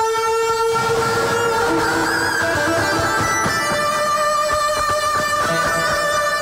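Live song on electric guitar, with long sustained notes held over one another, and a sung vocal line.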